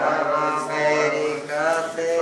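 A voice chanting in a steady, sing-song delivery, the pitch held with only short breaks.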